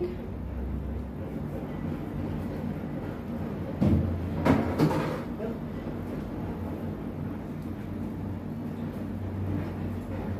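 A steady low machine hum, with a short burst of thuds and rustling noise about four seconds in.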